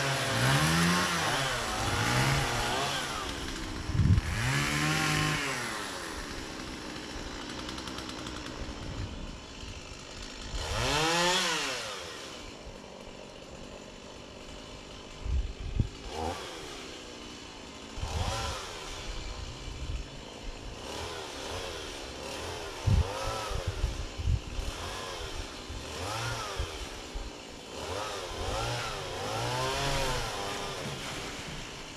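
Small two-stroke engine of a handheld gas power tool, revved up and let back down again and again in short bursts of cutting, each rising and falling in pitch over about a second. A few sharp knocks are scattered among the bursts.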